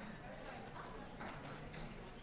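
Indistinct chatter of many people talking at once in a large room, with some light clatter.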